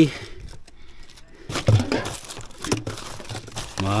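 Plastic bottles, wrappers and paper rustling and crinkling as gloved hands rummage through litter in a car footwell. The rustles and small clicks come irregularly, starting about a second and a half in.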